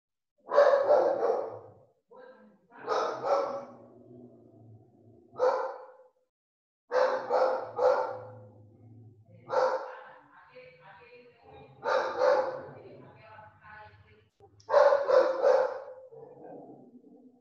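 A dog barking in repeated bouts of two to four quick barks, with short pauses between them.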